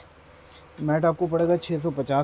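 A man's voice talking in a low, fairly level pitch, starting a little under a second in after a brief quiet moment.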